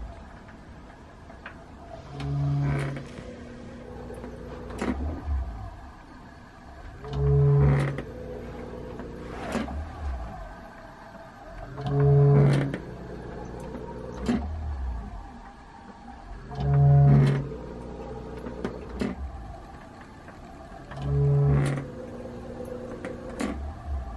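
Pipe organ sounding one held note of about a second, five times at even intervals of four to five seconds, each note triggered by the installation's artificial lungs. Between the notes the bellows and linkage mechanism clicks and knocks.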